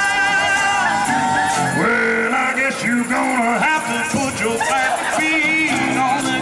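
Live band playing a soul cover with guitars, bass and a lead vocal: held notes in the first second or so, then a sung line from about two seconds in.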